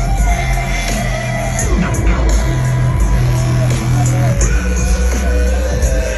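Live electronic bass music (dubstep style) played loud through a large concert sound system, recorded from among the crowd: heavy sustained sub-bass under synth lines that glide up and down in pitch.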